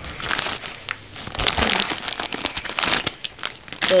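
Clear plastic bag crinkling as the headphones wrapped in it are handled: a dense run of irregular crackles.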